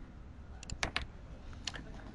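A few sharp clicks from a computer's mouse and keys, a cluster of them about a second in and one more near the end, as the page's save button is clicked.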